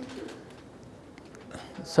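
A short pause in a man's speech, filled by faint background noise of a crowded terminal hall; his voice comes back right at the end.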